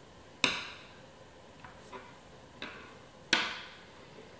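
Two sharp knocks about three seconds apart, each with a short ring, and a few lighter taps between them: small hard sugarcraft tools being handled and set down on the work table.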